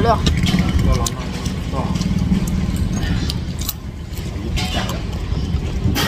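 Spoon and chopsticks clicking and clinking against noodle bowls, a few scattered sharp taps over a steady low rumble.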